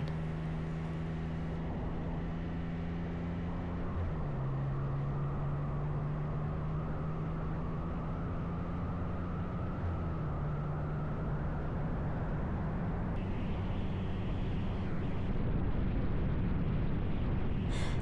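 Motorcycle engine running under way, with wind and road rush over the bike. Its note drops about four seconds in, then climbs slowly as the bike picks up speed.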